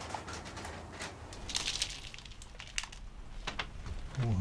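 Rustling and crinkling of things being handled, with scattered soft clicks and scrapes, the busiest stretch about a second and a half in.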